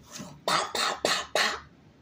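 A woman's voice making four sharp, breathy bursts in quick succession, each a little over a quarter-second apart, after a softer one at the start. They stop suddenly about three-quarters of the way through.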